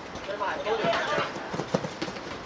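Indistinct voices of spectators at the side of a football pitch, with a few short thuds from players' feet and the ball on artificial turf in the second half.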